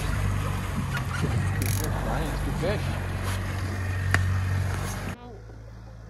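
Boat's outboard motor running steadily at trolling speed, a low drone mixed with wind and water noise. It cuts off abruptly about five seconds in to a quieter background.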